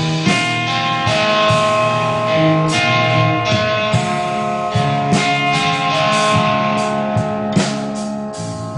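Live rock band playing an instrumental passage: electric guitars holding long sustained notes over drums and cymbals.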